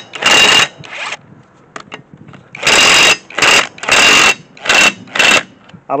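Einhell cordless impact wrench hammering on a car wheel's lug nuts in about six short bursts of trigger pulls, one near the start and five close together from about two and a half seconds in.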